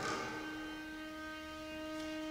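Bowed strings holding one long, steady note rich in overtones, part of an improvised new-music piece for violin, viola, cello and double bass.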